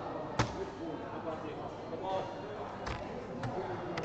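A soft-tip dart hitting an electronic dartboard with a sharp clack about half a second in, followed by two fainter clacks near the end, over a murmur of voices in a large room.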